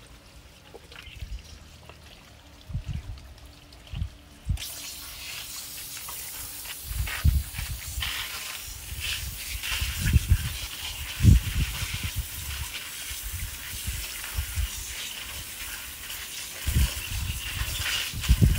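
Water from a garden hose with a brass nozzle, switched on about four seconds in and then running steadily as it washes over a gutted wild boar carcass on plastic sheeting. Dull thumps from handling the carcass come through now and then.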